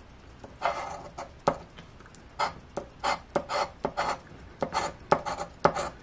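Metal scratcher coin scraping the scratch-off coating from a paper lottery ticket, in a run of short, uneven strokes, a few a second.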